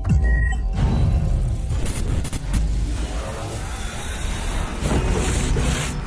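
Dramatic cinematic trailer music with a heavy, deep low rumble and a few sharp hits about two seconds in.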